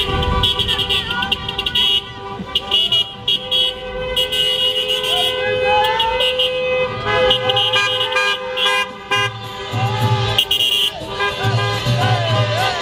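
Many car horns honking at once in long, overlapping held blasts from a convoy of cars, with voices shouting over them.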